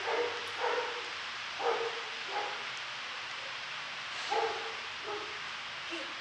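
A dog barking: about six short barks, in uneven pairs and singles.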